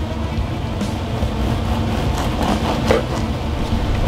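Steady low rumble of wind on the microphone, with the soft sawing of a knife through a crusty hoagie roll.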